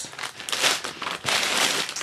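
Plastic packaging crinkling as a bag of small numbered diamond-painting drill packets is handled and moved about, in a run of rustles.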